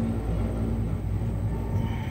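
Low rumble with a steady hum from a cabin of a Doppelmayr cabriolet lift riding along its haul rope.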